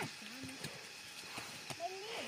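Faint, scattered knocks of hand digging tools striking stony hillside soil, a few of them in the second half, with brief soft voices between.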